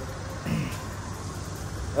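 A car engine idling with a steady low hum, echoing in a concrete parking garage.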